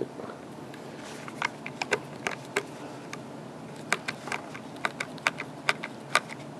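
Screwdriver turning small screws into a handheld radio's plastic battery pack, working back and forth: a run of sharp, irregular clicks, about fifteen in six seconds, over a faint steady hum.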